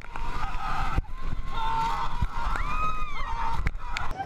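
Roller coaster riders screaming in long, rising-and-falling wails over a heavy rumble of wind buffeting the microphone as the car speeds along, with a few sharp knocks from the ride.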